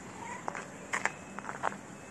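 Tabby street cat giving a few short meows, with sharp scuffing clicks of footsteps on gritty concrete.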